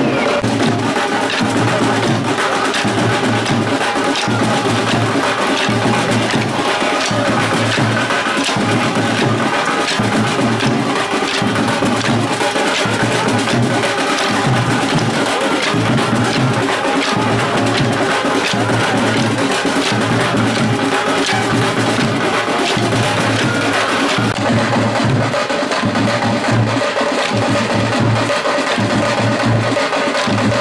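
Festive percussion music with sharp wooden clacks in a steady rhythm: kolattam dance sticks struck together over a pulsing drum beat.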